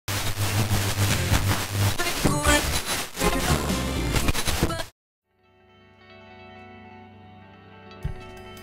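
Loud rock music with a steady drum beat that cuts off suddenly about five seconds in. After a brief gap, faint steady held tones fade in.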